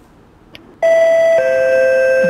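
Two-note descending chime like a Singapore MRT train's door-closing signal, starting about a second in: a high note, then a lower note held on. The chime warns that the train doors are about to close.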